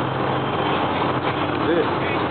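Steady rushing of a shallow creek flowing over its bed, with a faint voice briefly near the end.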